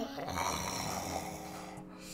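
A woman's long, noisy exhale that fades away, over a faint steady hum.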